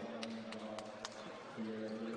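Basketball gym ambience: a low steady hum with faint background voices, and a few sharp taps in the first second.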